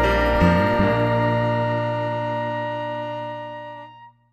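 Jazz band's final chord held and ringing out, with a short bass figure about half a second in, then slowly fading and cutting off at the very end.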